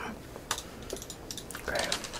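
A few light, sharp clicks, then a quicker run of them in the second second, under a short spoken "okay" near the end.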